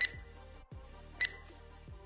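Two short electronic beeps about 1.2 s apart, the beeps of a countdown timer marking the drill's time, over faint background music.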